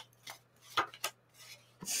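Paper tarot cards handled by hand: a few short soft rubs and taps, then a longer card slide near the end.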